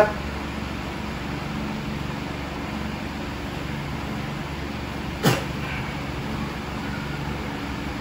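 Steady whir of an electric fan running in a small room, with one short sharp sound about five seconds in.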